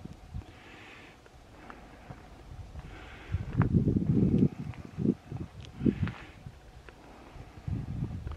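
Footsteps of a person walking while carrying a handheld camera, heard as irregular low thuds and handling noise. The heaviest cluster comes about halfway through.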